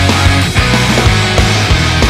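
Pop-punk rock band recording playing loudly: distorted electric guitars over bass and drums, with regular drum hits.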